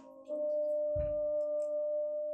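A single long, steady orchestral note, horn-like, from a vinyl record playing through a tube amplifier and loudspeakers in a room, picked up by a phone's microphone. There is a soft low thump about a second in and a few faint ticks of record surface noise.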